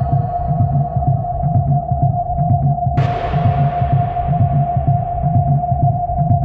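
Techno/house track in a breakdown: a steady held synth tone over a pulsing bassline, with no drums on top. About halfway through, a burst of white-noise sweep comes in suddenly and slowly fades away.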